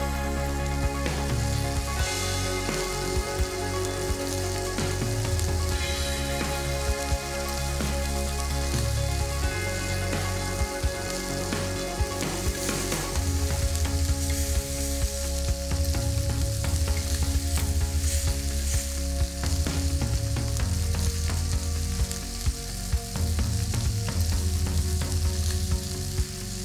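Pork skewers and potato slices sizzling steadily on a hot ridged grill pan, with metal tongs clicking against the pan now and then as the food is turned.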